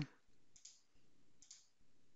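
Near silence with two or three faint computer mouse clicks.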